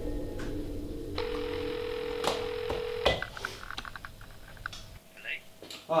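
A steady telephone tone heard through a phone handset for about two seconds, cut off by a click, then a short run of quick beeps and clicks as the call connects. Background music fades out before the tone starts.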